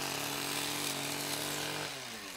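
Small petrol engine of a leaf blower running steadily at one even pitch, with a rush of blown air.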